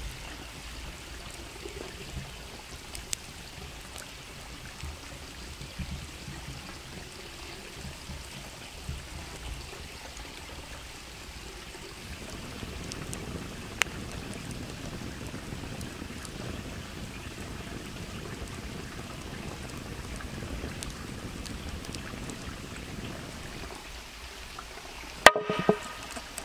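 Steady rushing, water-like outdoor background noise with a few faint clicks, growing fuller about halfway through. Near the end, a quick run of sharp knife strokes knocking on a wooden cutting board.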